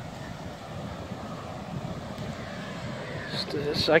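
Steady wind rushing over the microphone from a 15–20 mph sea breeze, with ocean surf underneath.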